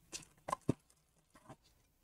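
Handling sounds as a plastic-wrapped power adapter is picked out of a cardboard box: a few faint, brief taps and crinkles of plastic wrap.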